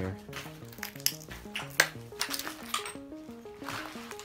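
Background music with a melody of short notes stepping up and down, over sharp clinks and crunches of footsteps on broken glass and debris. The loudest clinks come about a second in and just before two seconds in.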